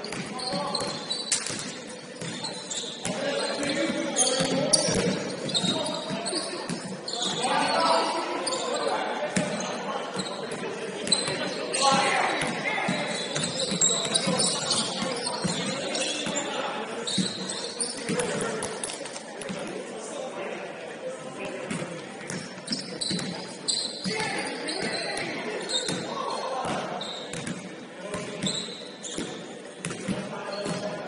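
Basketball being dribbled on a hardwood court in a gym with an echo, with repeated bounces and indistinct calls and shouts from players.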